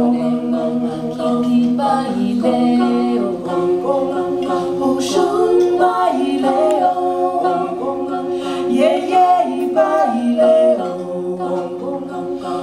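A women's a cappella vocal group singing in harmony, several voices layered over one another with no instruments.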